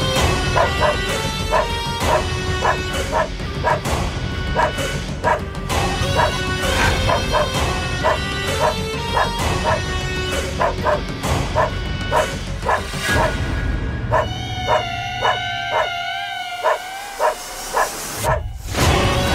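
German Shepherd barking repeatedly, about one to two barks a second, over background music: the dog is barking for the raw meat held up in front of it.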